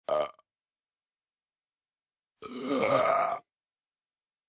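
A man burping twice: a short burp right at the start, then a longer, louder one lasting about a second midway through.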